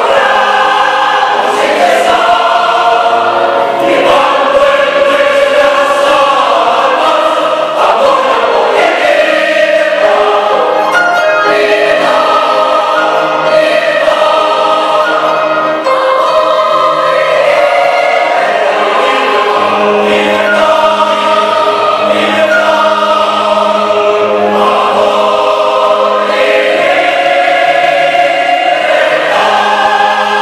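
Mixed choir singing a zarzuela chorus in Spanish with piano accompaniment, loud, full sustained chords.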